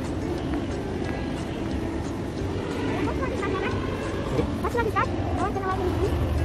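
Outdoor city ambience: a steady low traffic rumble with indistinct voices, and a few short high rising calls in the second half.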